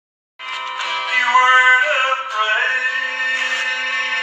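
A man singing a slow country gospel song, accompanying himself on acoustic guitar. The sound starts suddenly about half a second in.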